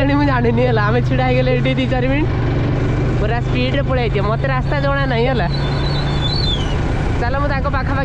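A motorcycle engine running steadily under way, with a person's voice, talking or singing, over it for much of the time.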